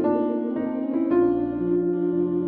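Organ music: sustained chords held without fading, a new chord entering at the start and again about a second in.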